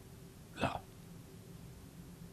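A man's single short, clipped vocal sound, a 'la', about half a second in, over a faint steady electrical hum.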